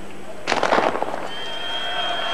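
Starter's pistol fired for a speed skating start: a single sharp crack about half a second in, with a short echo trailing after it.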